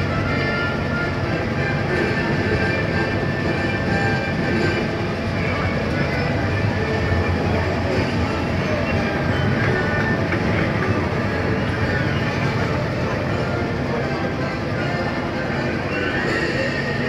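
A monorail train running steadily along its elevated track, heard from on board.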